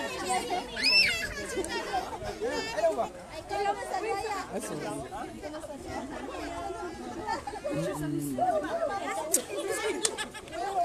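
Several people talking at once in the background, indistinct chatter, with one high rising-and-falling call about a second in.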